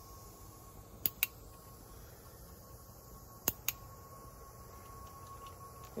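Two quick double clicks, sharp and short, about a second in and again about two and a half seconds later, over a faint steady background with a thin, steady high tone.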